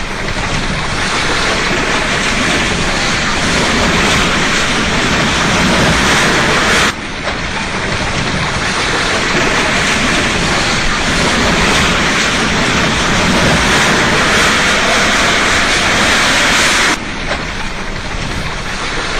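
A multi-storey building collapsing: a continuous loud noise of falling masonry and rubble. It breaks off abruptly about seven seconds in and again near the end, each time starting over.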